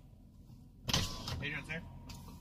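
Car's power window being lowered over a steady low rumble. About a second in the sound turns suddenly loud as outside noise comes in, and a voice says "Hey".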